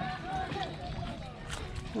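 Voices of people talking in the background, over a steady low rumble.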